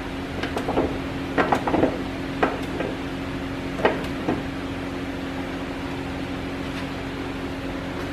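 Scattered metallic clicks and knocks of hand tools at work on an open engine during the first half, over a steady mechanical hum that carries on alone after that.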